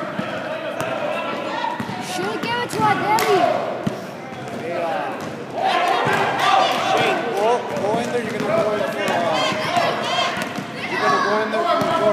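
Basketball bouncing on a hardwood-style gym floor during play, with sharp thuds scattered through, amid voices of players and spectators in the hall.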